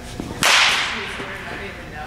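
A baseball bat hitting a pitched ball once: a sharp crack about half a second in that fades away over about a second.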